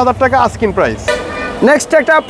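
A vehicle horn toots once for about half a second, a little past a second in, over a low traffic rumble and a man's talk.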